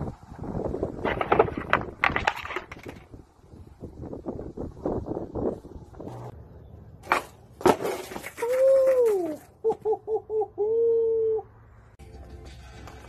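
Skateboard clattering and rolling on concrete for the first few seconds, then two sharp knocks about seven seconds in. These are followed by the loudest part, a short pitched tune-like sound effect: one note that rises and falls, four quick short notes, then a long held note.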